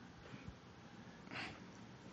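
Near silence: faint room tone in a pause between speakers, with a small click about half a second in and a brief faint hiss a little before the end.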